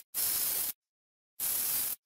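Cordless drill running in two short bursts of about half a second each, boring into a pine 2x4.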